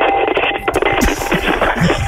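Radio music, a station jingle or stinger cutting in suddenly at full volume to close a prank-call segment.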